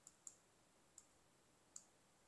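Near silence with four faint, short computer mouse clicks spread over two seconds.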